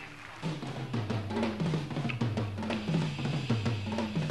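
Heavy metal drum kit played live, coming in about half a second in with kick drum, snare and cymbal hits under low pitched notes that recur in a steady pattern.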